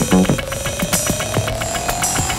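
Glitch-style electronic music: rapid clicks and ticks over a thin synth tone that slowly rises in pitch.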